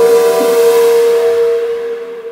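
Slow, relaxing piano music: a single held chord rings on and slowly fades near the end, with no new notes played.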